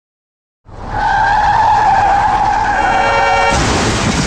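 Sound effect of car tyres screeching in a long skid, starting suddenly out of silence, then a loud crash breaking in near the end.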